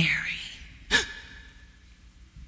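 A woman speaks one breathy word at the very start, then about a second in gives a single short, sharp gasp, an acted intake of breath.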